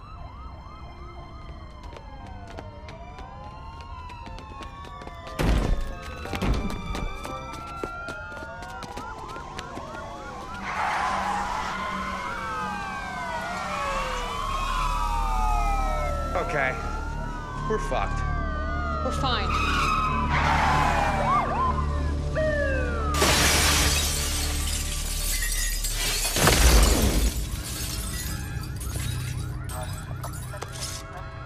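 Several police sirens wailing at once, their rising and falling tones overlapping, under a low steady film score. There are sharp crashes about five to six seconds in and a loud shattering burst near the end.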